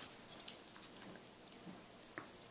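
Faint scuffling of two dogs playing on a tile floor: a few light clicks and taps from paws and claws on the tiles, mostly in the first second.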